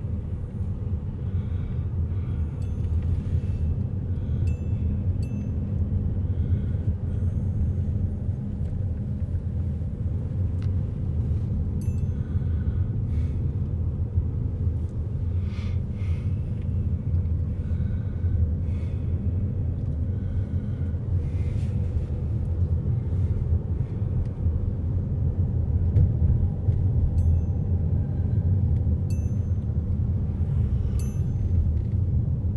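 Car cabin road noise while driving slowly: a steady low rumble of engine and tyres heard from inside the car, with a few faint clicks now and then.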